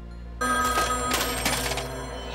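A telephone ringing, starting suddenly about half a second in and sounding in two short bursts.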